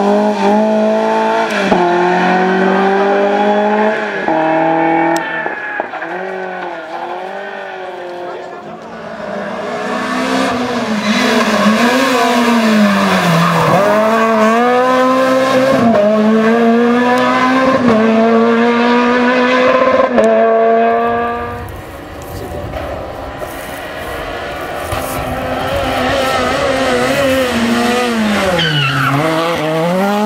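Rally car engines at full effort, one car after another: a BMW E30 pulls away with the pitch stepping up through quick upshifts. Then Renault Clios brake into corners with the engine pitch dipping sharply and climb hard out of them again.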